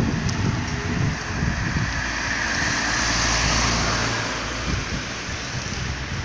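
Road noise mixed with wind on the microphone: a low rumble with a hiss that swells in the middle and then eases off, like a vehicle passing.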